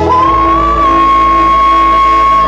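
A woman singing into a microphone with musical accompaniment, stepping up to a high note just after the start and holding it steady and long.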